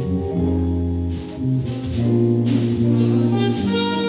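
Live jazz quartet playing: saxophone over electric bass, drums and keyboard.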